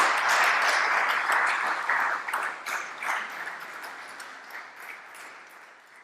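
Audience applauding, dense at first, then thinning to a few scattered claps and fading out near the end.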